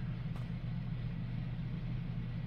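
A steady, low, even background hum, with no speech.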